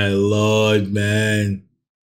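A deep male voice chanting a few held, steady notes, which cut off suddenly near the end.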